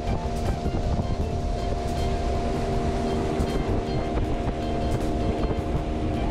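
Small river boat's outboard motor running at a steady cruising speed, a constant drone with a few held tones, over heavy wind rumble on the microphone.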